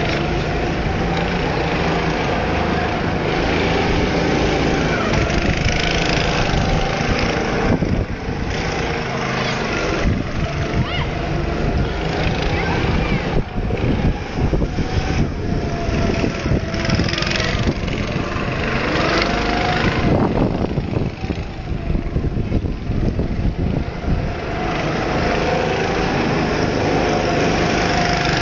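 Small petrol go-kart engines running on the track, their note rising and falling as the karts speed up and slow through the corners.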